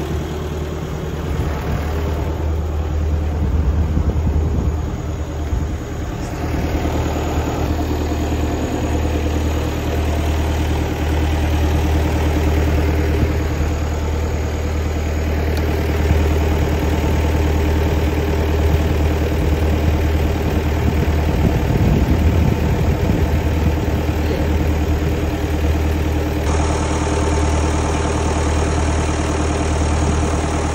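Tractor engine idling steadily with a deep, even hum. Near the end water starts gushing from a hose into a trough over the engine sound.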